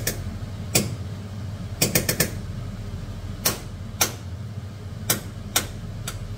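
Metal fork tapping and clicking against the rim and sides of a metal pot while hot dogs are pushed down into boiling water: irregular sharp taps, including a quick run of about four, over a steady low hum.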